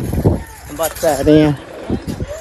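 A person's voice in short phrases, a few notes held steady, over a low rumble.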